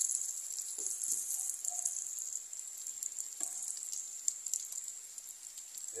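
Chopped ginger and pork pieces sizzling in hot rendered pork fat in an electric skillet: a steady crackling hiss as the aromatics are sautéed.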